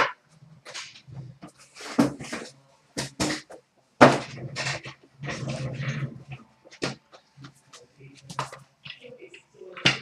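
Trading cards and a cardboard hobby box being handled on a glass counter: scattered taps, clicks and rustles, with sharp clicks at the start, about four seconds in, and near the end.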